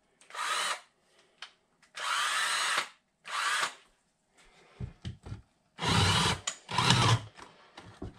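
Cordless drill with a 1½-inch spade bit run in about five short bursts, each under a second, as it tries to bore through a board. The last two bursts are louder and deeper. The drill isn't working well enough for the job.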